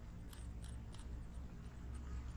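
Faint, short scratches of a stylus writing figures by hand on a tablet, a few strokes about half a second apart, over a low steady hum.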